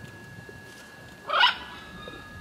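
A single short, rough bird call about one and a half seconds in.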